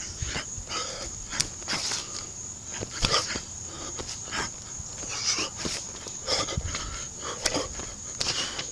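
A boxer's short, sharp breaths hissing out with his punches while shadowboxing, in irregular bursts every half second to a second.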